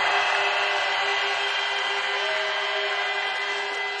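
A huge outdoor crowd cheering and shouting in response to a rally speech line, a continuous wash of voices that slowly dies down, with one steady held tone running through it.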